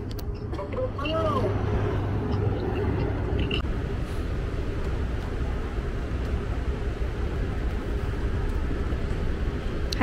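Steady low rumble and hiss of an airport moving walkway running amid terminal background noise, with a short vocal sound about a second in.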